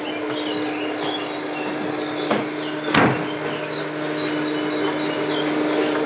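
Wakeboard boat's engine idling with a steady low hum, with a sharp knock about three seconds in.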